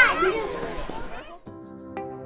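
A young girl's high-pitched call trailing off, with children's voices behind it; then, after a cut about one and a half seconds in, soft ambient lounge background music with sustained chords.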